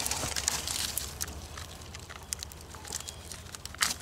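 Rustling and crackling of dry leaves and twigs as a hand pushes through thick undergrowth to reach a morel mushroom, with scattered small snaps, louder at the start and in a short burst just before the end.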